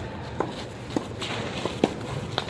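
A tennis rally on a clay court: shoes stepping and scuffing on the clay, with several sharp pops of the ball being struck and bouncing, the loudest near the end.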